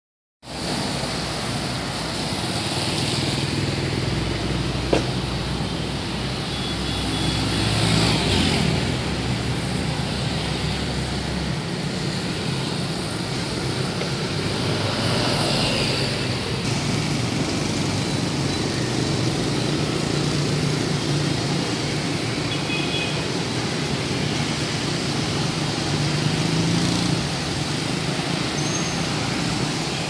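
Street traffic, mostly motorbikes with some cars, passing on a wet road in a steady stream, with several passes swelling louder close by and one sharp click a few seconds in.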